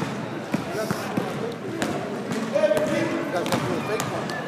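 Basketball bouncing on a hardwood gym floor, a few separate bounces in the first two seconds, in an echoing gymnasium with voices of players and spectators around it.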